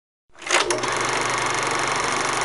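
Film-projector running sound: it starts suddenly with a couple of clicks, then settles into a steady mechanical whirring rattle.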